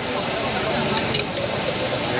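Hot oil sizzling steadily on a flat-top griddle, with crowd voices in the background.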